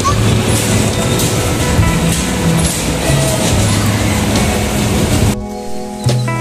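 Bumper cars running on the rink, a loud steady din with music playing through it. About five seconds in, it cuts off abruptly to clean background music with plucked guitar.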